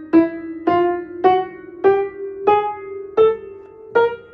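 Upright piano notes played one at a time in a slow rising run, seven notes about half a second apart, each ringing on under the next. The lingering ringing is taken as a sign of bass dampers lifting too early off the strings.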